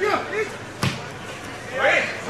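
A football kicked once, a sharp thud a little under a second in, amid shouting from players and spectators at the pitch.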